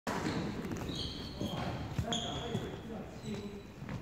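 Badminton play in a sports hall: a few sharp knocks of rackets striking shuttlecocks, with brief high-pitched squeaks of shoes on the wooden court and voices in the background.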